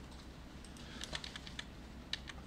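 Computer keyboard clicking faintly in a few quick keystrokes as text is pasted in repeatedly.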